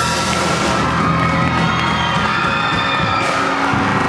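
Amplified electric guitars ringing out at the close of a live rock song, with a crowd cheering and shouting.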